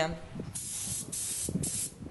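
Spray gun hissing in three short bursts, each lasting about half a second, with brief gaps between.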